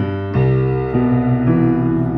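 Steinway piano playing a jazz walking bass line in the low register: a repeating ii–V–I–VI progression in C, with a new note or chord struck roughly every half second and ringing on between strikes.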